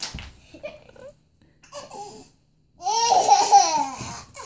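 A toddler laughing in bursts: a short laugh at the start, a smaller one about two seconds in, then a long, loud peal of laughter near the end.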